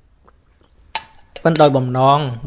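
A sharp clink of a hard object about a second in, ringing briefly, then a man's voice speaking.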